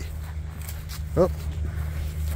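A man's short exclamation, "oh", about a second in, over a steady low rumble.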